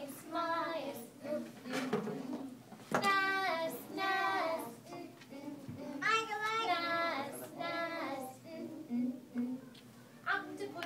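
Young child singing a song in short phrases with brief pauses between them.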